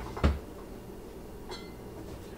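A single dull thump about a quarter second in, then a faint light click a little over a second later, over a steady low hum.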